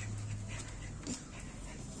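Quiet breathing of a French bulldog as its head and ears are lathered, with soft rubbing of soapy fur under the hands.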